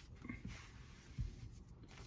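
Faint rubbing of an absorbent sponge pad wiped across a comic book's paper cover, with a brief soft low bump just past a second in.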